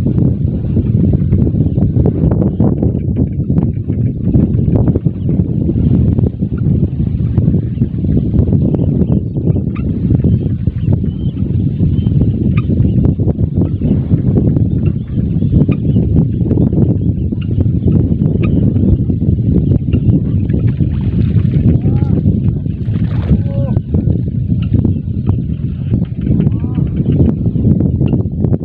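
Wind buffeting the microphone: a loud, rough low rumble with no break.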